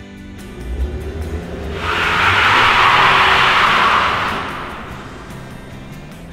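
Quiet background guitar music, over which a car passes at speed: a low rumble, then a loud rush of noise that swells and fades over about three seconds.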